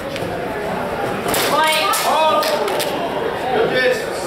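Steel training swords striking each other several times in a quick exchange, sharp metallic clacks about a second and a half in, with people shouting over them.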